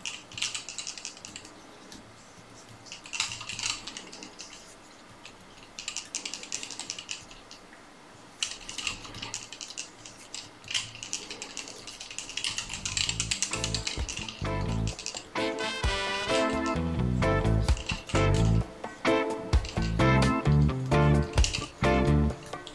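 Short bursts of dry crackling rustle as fly-tying materials are handled in gloved hands at the vise. About halfway through, background music with a bass line and a beat comes in and becomes the loudest sound.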